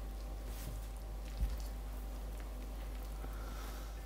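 Faint stirring of flour and water into a wet dough with a plastic spoon in an enamel bowl: soft squishing and scraping over a steady low room hum, with one soft knock about a second and a half in.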